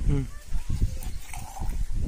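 A goat's bleat trailing off, falling in pitch, right at the start, then the soft irregular sounds of hand milking into a cup.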